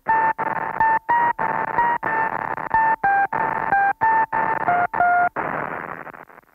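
A run of short electronic beeps over a bed of hiss, chopped by brief silent gaps about two to three times a second, with the beeps stepping between a few pitches like telephone keypad tones. This is part of the song's closing section, and it thins out just after the end.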